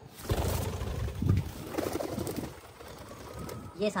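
Domestic pigeons in a loft, cooing and stirring, busiest in the first couple of seconds and quieter after.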